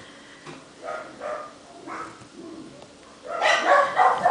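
A dog barking a few short times, the last and loudest near the end.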